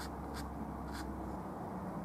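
Oil paintbrush bristles rubbing on canvas in two short, scratchy strokes, over a steady low hum.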